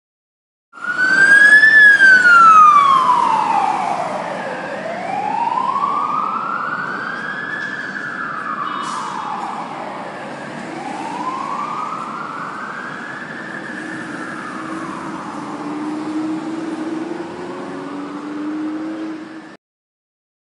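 Wailing emergency-vehicle siren for a fire engine, its pitch rising and falling slowly in long sweeps of a few seconds each. It is loudest at first, then a little quieter, and cuts off abruptly near the end.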